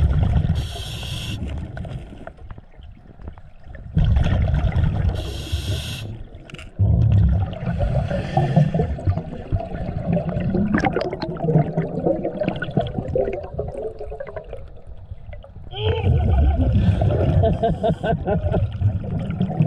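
Scuba regulator breathing recorded underwater: a hiss on each inhale and a rumbling, gurgling burst of exhaled bubbles, repeating every few seconds, about four breaths in all.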